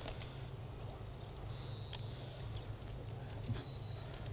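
Faint soft clicks and scratches of a thin stick probing soft, wet, rotted wood inside a borer-hollowed tree trunk, over a steady low hum.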